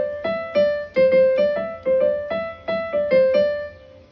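Digital keyboard playing a simple melody one note at a time, about three notes a second, stepping up and down among three adjacent white keys. The last note dies away near the end.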